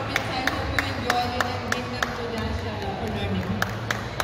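Scattered hand claps, a few a second and unevenly spaced, over the murmur of a crowd's voices.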